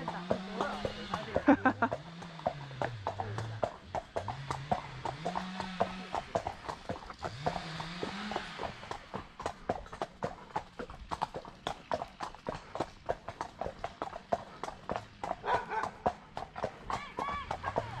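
Shod horse hooves clip-clopping at a walk on a paved lane, a steady run of sharp hoof strikes. During the first half a distant chainsaw revs up and down, then stops.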